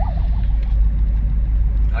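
Steady low rumble of road and engine noise inside a moving car, with a fire engine's fast-warbling siren fading out just as it begins.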